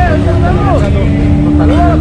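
Side-by-side UTV engines idling with a steady low rumble, as the vehicles wait to set off.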